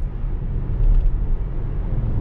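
Steady low road and tyre rumble heard inside the cabin of a 2015 Tesla Model S cruising at about 60 mph.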